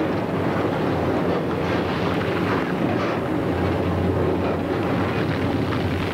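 Heavy mining machinery, a dragline excavator working its bucket, giving a steady mechanical rumble with irregular clatter; a low hum grows stronger about halfway through.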